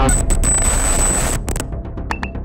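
Cinematic title sound design: a rush of glitchy digital noise over a deep low rumble, with a thin high whine held until about a second and a half in, when the noise drops away.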